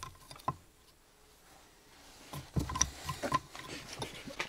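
Hand carving gouge cutting into a wooden block: a sharp cut about half a second in, a quiet pause, then a quick cluster of short crisp cuts and scrapes.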